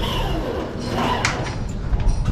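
Steel roofing sheets scraping and rattling as they are worked into place on metal roof trusses, with a few sharp knocks.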